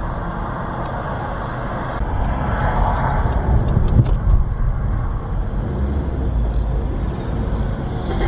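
Car driving, heard from inside the cabin: a steady low rumble of engine and tyres that swells for a moment about three seconds in, with a short knock about four seconds in.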